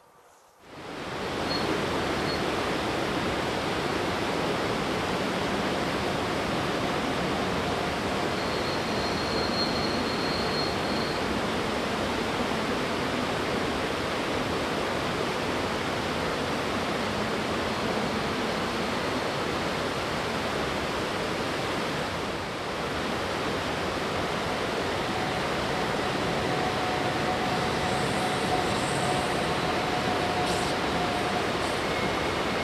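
Steady rushing of a mountain stream. A faint steady hum joins near the end as the train draws nearer.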